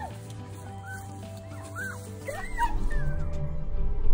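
Cavapoo puppy giving a series of short, high yips and whimpers, each rising and falling in pitch, over background music that grows louder with a low beat in the second half.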